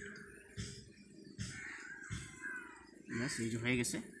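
A man's voice speaking near the end, the loudest sound. Before it, a few faint short sounds, roughly one every half second to second.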